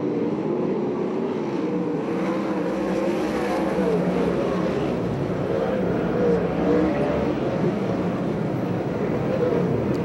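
A pack of sprint car V8 engines racing together, a steady mixed engine note whose pitches rise and fall as the cars run the oval.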